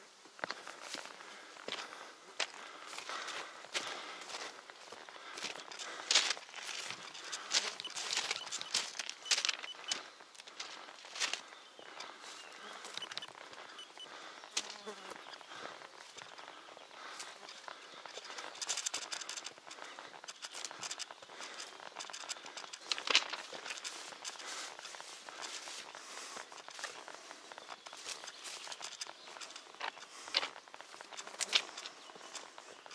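Footsteps on railway track ballast and sleepers: an irregular run of short gravelly steps, some louder than others.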